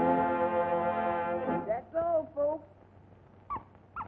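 Cartoon orchestra score ending on a loud held brass chord, cut off after about a second and a half. Two short sliding notes follow, then a few faint brief chirps near the end.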